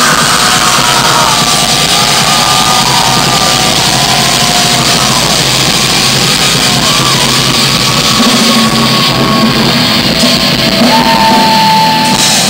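Loud live heavy rock band playing, with distorted guitar, drums and long yelled or sung vocal notes over it.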